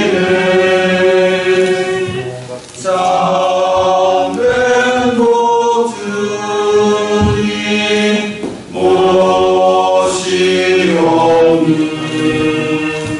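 A congregation singing a slow hymn during Communion, in long, held notes with two short breaks for breath, about a quarter of the way in and again about three-quarters through.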